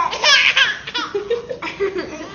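A baby laughing in a quick run of short bursts.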